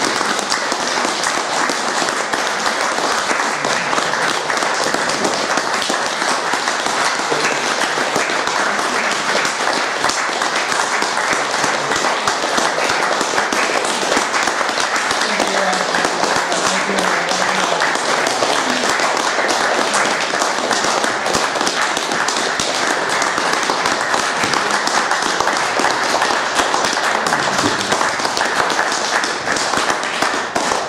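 An audience applauding, steady and sustained, with a few voices mixed in.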